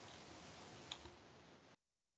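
Near silence: faint microphone hiss with one soft click about a second in, then the sound cuts out to dead silence near the end.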